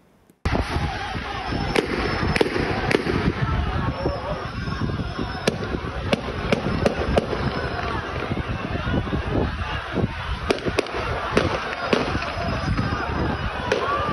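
Gunfire: a dozen or more sharp shots at irregular intervals over the continuous shouting and din of a large crowd.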